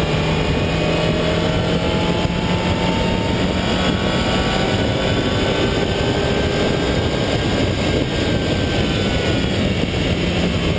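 Mazda Miata's four-cylinder engine accelerating hard, its pitch climbing slowly through the first half, then easing downward near the end as the car slows, over heavy wind and road noise.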